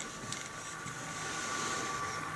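Faint handling noise: braided fishing line and hands rubbing and rustling as the line is threaded onto a grip stick hooked to a dial scale for a breaking-strength test, with a couple of light clicks about a third of a second in.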